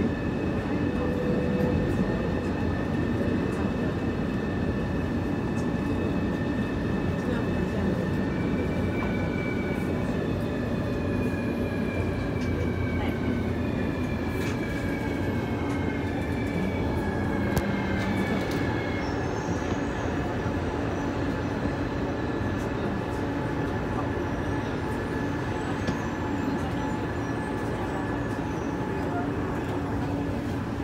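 Metro train heard from inside the passenger car: a steady running rumble with the whine of its electric drive, a set of tones that glide down in pitch over about ten seconds from roughly a third of the way in as the train brakes into a station.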